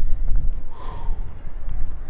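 Wind buffeting the camera's microphone as a loud, steady low rumble, with one short breath from the climber about a second in.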